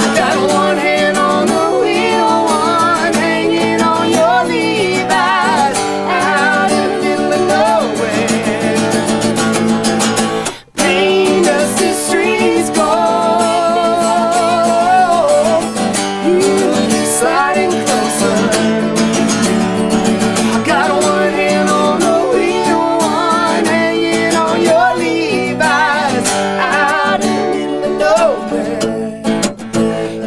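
Acoustic guitar strummed, with a sung melody over it, in a live acoustic country song. The music breaks off for a moment about ten seconds in.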